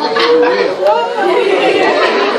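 Speech only: people talking, several voices at once.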